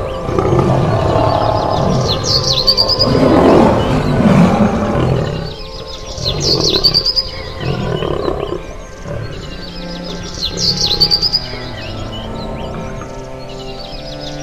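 Big cat roaring, loudest through the first five seconds, over background music. A short bird chirp repeats every few seconds.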